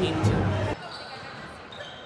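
Basketballs bouncing in the background, a low thud about every half second over a steady hum. The sound cuts off suddenly under a second in, leaving a quieter hum.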